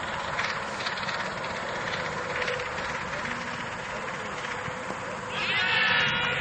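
Open-air ambience with faint distant voices, then a loud, high-pitched cry lasting under a second near the end.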